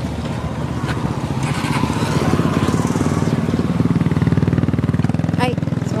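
Motorcycle engine of a motorized tricycle running close by with a fast, even putter. It grows louder through the middle and eases slightly near the end.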